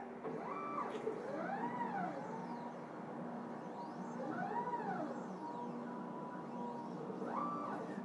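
Stepper motors of a 40 W CO2 laser engraver driving the gantry and laser head around an oval with the laser not firing. Their whine glides up and down in pitch as the head speeds up and slows along the curve, repeating each lap, over a steady low hum.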